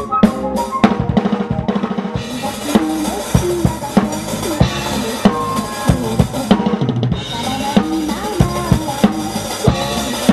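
Drum kit played fast and hard in a metal style: rapid kick drum and snare hits under a continuous crash of cymbals. The cymbal wash drops out for under a second about two-thirds of the way through, then comes back.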